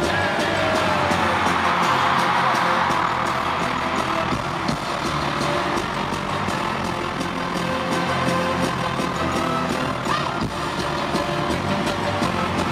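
Live pop concert music played loud through an arena sound system, heard from among the audience, with a steady beat and crowd noise mixed in, stronger in the first few seconds.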